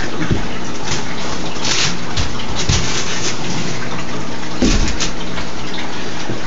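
Steady rushing of water flowing into an 800-gallon aquaponics fish tank, with two brief knocks about two and five seconds in.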